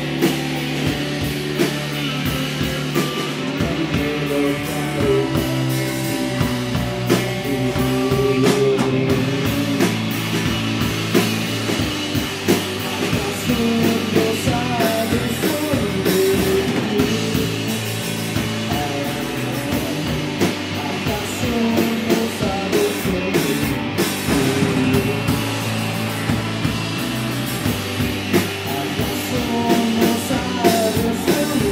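Live rock band playing: electric guitar, bass guitar and drum kit at a steady beat, with a man singing into the microphone.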